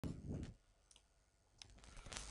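A soft low bump at the very start, then near silence broken by two faint clicks from operating a computer.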